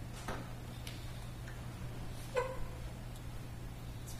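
Quiet room tone with a steady low hum, a few faint clicks, and one short pitched sound about two and a half seconds in.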